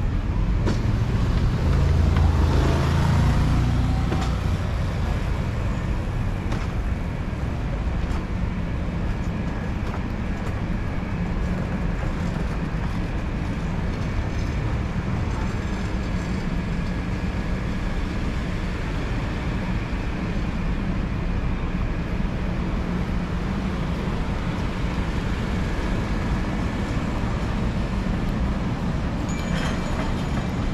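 City street traffic: a vehicle passes close in the first few seconds, then a steady hum of road traffic continues.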